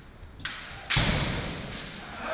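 Kendo attack: a sharp clack of bamboo shinai about half a second in, then a loud thud about a second in, the bare-foot stamp (fumikomi) on the wooden floor as the strike goes in, ringing on in the hall.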